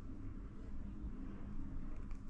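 Quiet room tone: a low, steady hum with no distinct events.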